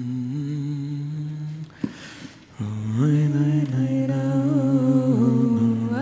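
Voices humming a wordless melody in long held notes that move slowly in pitch. About two seconds in, the humming breaks off briefly with a click, then comes back louder.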